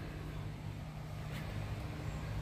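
Steady low mechanical hum with a faint hiss of outdoor background noise, and one faint click about one and a half seconds in.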